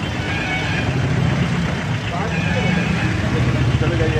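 A vehicle's engine idling close by as a steady low hum, with people talking in the background.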